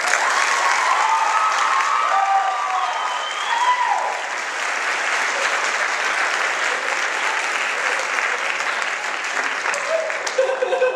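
Audience applauding steadily in a large hall, with a few voices calling out over the clapping in the first few seconds.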